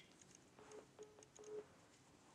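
Three faint, short, low beeps from a smartphone at the end of a phone call, about half a second apart, starting about half a second in.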